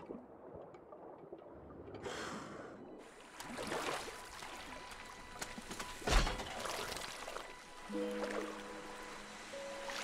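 Film soundtrack of water: a quiet, muffled underwater stretch, a rush of water about two seconds in, then open water lapping with a loud thud about six seconds in. Held music notes come in near the end.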